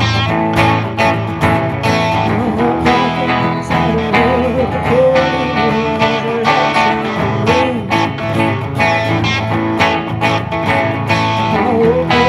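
Live guitar band of acoustic and electric guitars playing an instrumental passage of a ragtime blues: steady strummed chords under a lead guitar line with bending notes.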